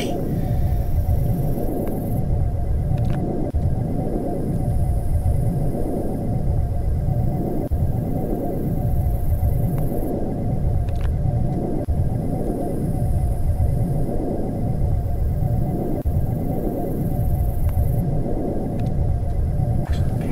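Sci-fi UFO sound effect: a deep, steady electronic rumbling drone with a sweeping, wavering pulse about every two seconds.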